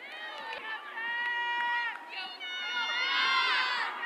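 Several women's voices shouting long, high-pitched held calls, which pile up into a group of overlapping yells near the end.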